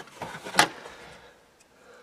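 Hands working inside a car's interior trim panel, with one sharp click about half a second in, then quieter handling.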